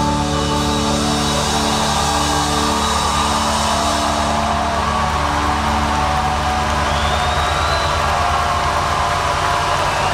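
A live band's last chord ringing out in held tones at the end of a song, under an audience cheering, with a rising whistle about seven seconds in.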